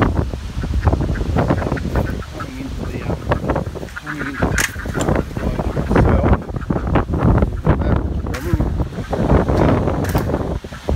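Ducks quacking repeatedly in short calls, with wind rumbling on the microphone.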